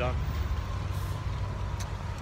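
Steady street noise in heavy rain: traffic on a wet road with falling rain.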